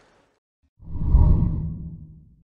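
A deep whoosh sound effect with a low boom under it, coming in suddenly about a second in and fading away over about a second and a half: an editing transition into an animated outro graphic.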